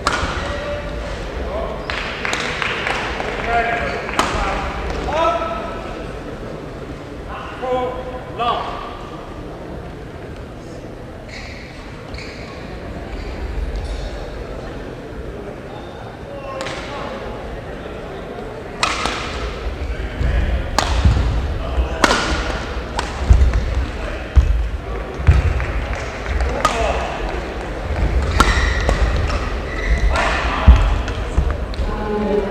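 Echoing sports-hall sound: indistinct voices in the first few seconds, then from about 17 s in a run of sharp hits and thuds from badminton rallies on neighbouring courts, racket strikes on the shuttlecock and footfalls on the court floor.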